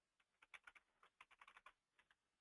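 Computer keyboard typing: a quick run of faint keystrokes, a user name being entered into a login field, stopping shortly before the end.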